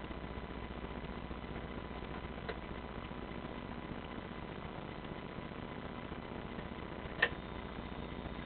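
Steady low electrical hum of idle, switched-on band amplifiers and PA in a small room, with two faint clicks a few seconds apart.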